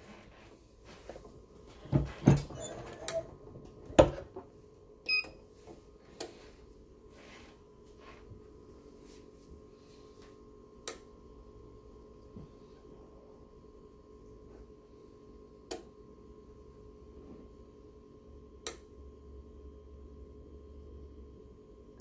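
Heat press being clamped shut: a few heavy clunks of the handle and platen about two to four seconds in, then a short beep. After that comes a faint steady hum with a few light clicks while the press holds the mouse pad.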